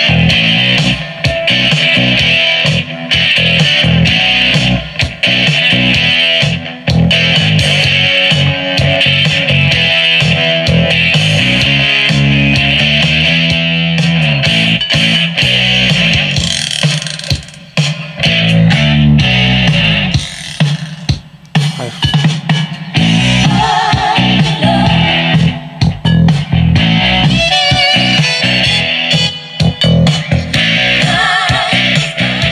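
Instrumental guitar music with bass and drums played loud through a ROJEM HBPC1602B portable bass-tube speaker, which has two 5.25-inch woofers and two 2.5-inch drivers. The music is streamed over Bluetooth and briefly drops in level a little past the middle.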